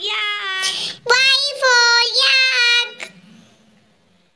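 A child singing in a high voice: two held, sung phrases, the second breaking off about three seconds in and leaving only faint sound.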